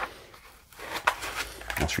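Light handling noises, a few soft clicks and scrapes about a second in: a deck of cards being lifted out of a foam-lined box insert.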